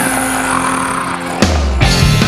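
Instrumental passage of a blues-rock song, no vocals: dense held band tones, then sharp drum hits with a heavy low note about one and a half seconds in and again near the end.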